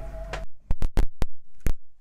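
Background music ends about half a second in. Then come about five sharp clicks and knocks over the next second and a half against near silence: handling noise as the camera is moved.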